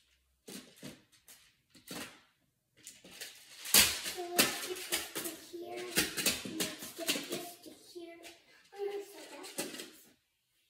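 Plastic building tiles clicking and knocking together as a child builds with them, with the sharpest knock about four seconds in. A child's voice, without clear words, runs over the clatter from just after that knock and again near the end.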